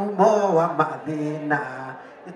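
A man singing a slow, chant-like line into a handheld microphone, holding some notes steady for about half a second.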